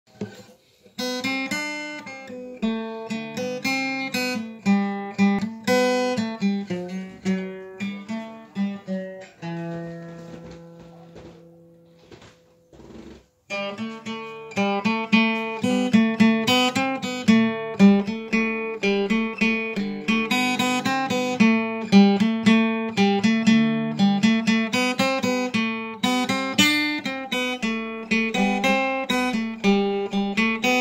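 Solo guitar, single notes picked in a quick, steady pattern. About ten seconds in, a chord is left to ring and fade, there is a brief break a little after twelve seconds, and then the picking resumes, fuller and louder.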